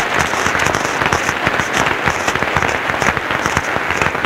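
Audience applauding: dense, steady clapping at an even level throughout.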